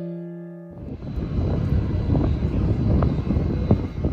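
A piano chord rings for under a second. It gives way to a loud, steady rumbling roar of an Arriva regional train at a station platform, with a few sharp clicks and squeaks.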